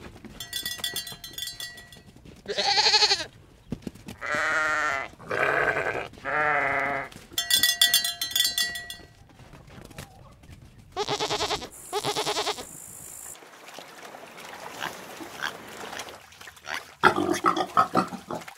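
Sheep bleating: a series of long, wavering bleats, one after another, through the first two thirds, followed by a quieter stretch and a short, louder jumble of noise near the end.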